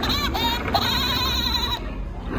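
Recorded Woody Woodpecker laugh played by a tram-shaped novelty popcorn bucket: a rapid, warbling, high-pitched cackle that ends in a held, wavering note and cuts off just before the end.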